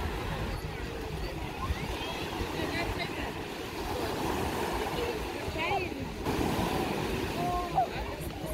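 Small waves washing onto a sandy beach, mixed with the scattered voices and calls of many bathers in the shallows.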